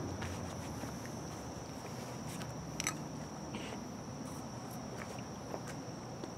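Faint handling of small gear in the grass: a few light clicks and rustles, over a steady outdoor background with a thin, high, steady tone.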